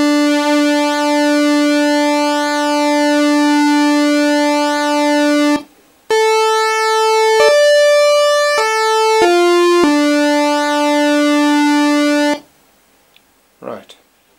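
Nord Stage 3 Compact synth section playing a buzzy pulse-wave tone (Pulse 10 waveform with pulse-width modulation): one note held for about six seconds, then after a brief break a short phrase of five notes that rises and falls back, ending on the opening pitch held for a couple of seconds.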